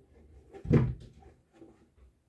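A pair of leather lace-up boots being picked up and handled, with one loud dull thump about three quarters of a second in as a boot knocks against the surface or the other boot, amid faint rustling.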